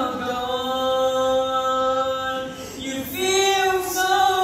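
A young male voice singing an Azadari kalam unaccompanied: one long held note, then a new, higher phrase begins about three seconds in.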